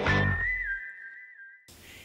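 A whistled jingle over backing music with a beat. The music cuts off under a second in, and the whistle carries on alone as one held note that steps down in pitch, stopping shortly before the end.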